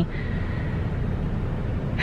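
Steady low road and engine rumble inside a car's cabin while it is being driven.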